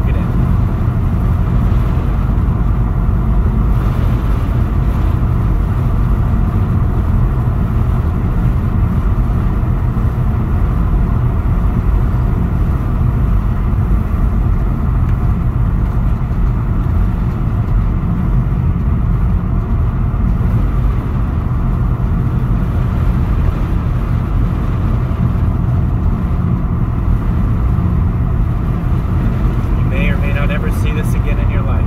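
Steady low rumble of a car driving, heard from inside the cabin: tyre noise on rough asphalt mixed with the engine, holding even throughout.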